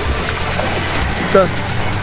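Low steady hum of a boat's outboard motor running, under wind blowing on the microphone.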